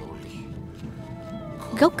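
A brief pause in a chanted Shandong kuaishu ballad, with only a faint drawn-out sung note under it. The next line starts near the end with a sharply rising syllable.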